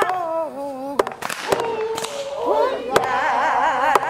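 A man's voice sings a line of a Korean folk song with a strongly wavering pitch. About a second in comes a quick cluster of sharp knocks of wooden poles, with single knocks later, and then several voices join in the sung refrain.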